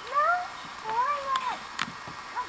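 A young child's voice: two short, high, meow-like calls, the first rising in pitch and the second longer, sliding up and then falling away. A sharp click comes near the end.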